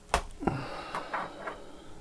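Aluminium laptop case handled on a silicone work mat: a sharp knock as it is set down, a second knock just after, then about a second of scraping as it is slid into place.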